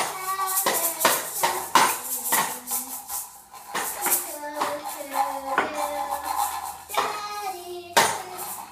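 Children's makeshift band: a simple melody of held notes that step up and down, over frequent jingling, clattering strikes on toy percussion.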